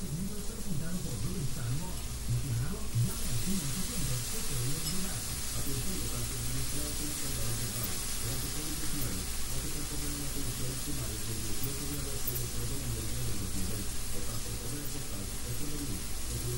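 Sofrito frying in a pan on the stove, a steady sizzle that grows sharply louder about three seconds in and then holds. A low murmur of voice runs underneath.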